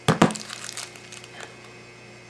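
Clear plastic toy wrapper being handled and opened. There are a couple of sharp clacks right at the start, then light crinkling that dies away about one and a half seconds in.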